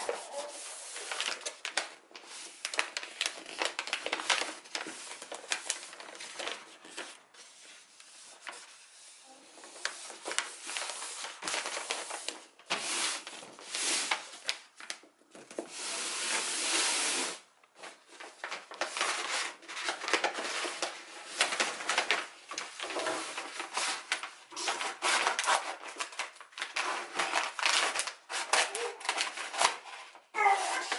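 Wrapping paper rustling and rubbing as hands fold it around a box and smooth it flat, in irregular strokes. A longer, louder sweep of a hand across the paper comes a little past the middle.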